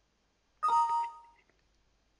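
A Windows system alert chime, a short two-note descending ding that rings out over about a second, sounding as an information message box pops up.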